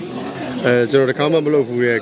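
A man speaking Burmese into close microphones, with a short pause early on before the speech resumes.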